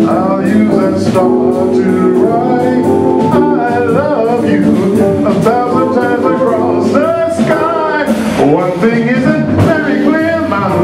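Live jazz-blues performance: a male vocalist singing over an organ trio of organ, electric guitar and drums.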